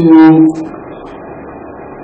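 A man's voice holds one drawn-out syllable for about half a second, then a pause filled only by steady room hiss from the recording.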